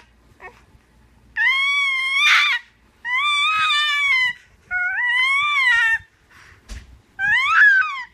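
A baby squealing: four high-pitched vocal squeals, each about a second long, rising then falling in pitch, with short pauses between them.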